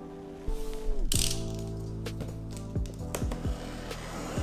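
Clicks of a snap-off utility knife's blade being ratcheted out, a separate click every half-second or so, over background music. About a second in, the music drops in pitch as if slowing to a stop, and there is a brief hiss.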